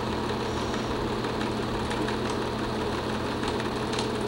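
Film projector running: a steady mechanical whir and clatter with a low hum.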